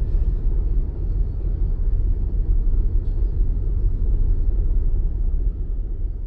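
Steady low outdoor rumble with no voices.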